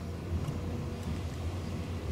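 Steady low rumble of a passenger train in motion, heard from inside the carriage, with a faint click about half a second in.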